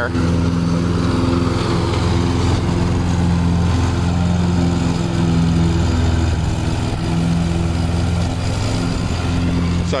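Zero-turn riding mower's engine running steadily as it cuts grass, an even low drone that holds one pitch.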